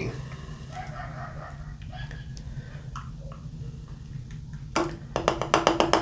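Stout being poured from a can into a glass. It is quiet at first, then in the last second or so the can glugs in a quick, even run.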